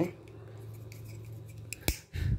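A low steady hum, then a single sharp click near the end from a plastic disposable lighter being worked at a gas sensor.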